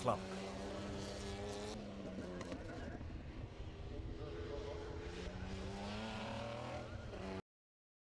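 A hill-climb race car's engine running under load as the car drives up the course, its note dipping and then rising again. The sound cuts off abruptly about seven seconds in.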